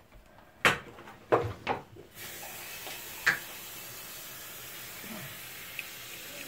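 A few knocks as a glass container is handled over a toilet bowl, then from about two seconds in a steady watery hiss as liquid is poured into the bowl.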